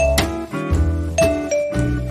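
Background music: bell-like struck notes ringing over a sustained bass line, a new note or chord roughly every half second to second.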